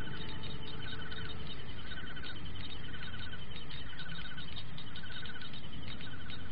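Cartoon soundtrack ambience: a steady low hum under fast light ticking, with a short warbling electronic chirp that repeats about once a second.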